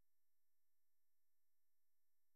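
Near silence: the recording is essentially empty between the narrator's phrases.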